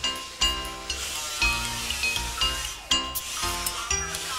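Background music: held chords over a regular beat.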